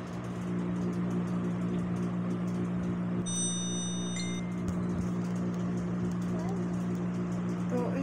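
A steady low hum, with a brief cluster of high, steady electronic-sounding tones a little over three seconds in.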